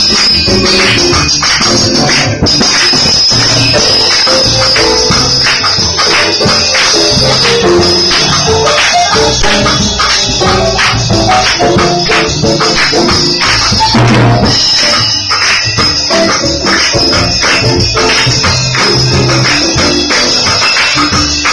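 Live band music: keyboard notes over a steady, quick beat of sharp percussive strokes, with the audience clapping along.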